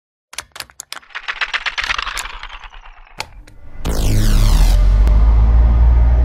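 Intro sound design: a run of sharp clicks, a few scattered at first, then a rapid run of about ten a second. About four seconds in, a deep bass hit lands with a high falling sweep and hangs on as a loud low drone.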